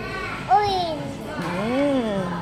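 A toddler's voice making wordless sing-song sounds: a sharp high call about half a second in that falls away, then a rising-and-falling one near the end.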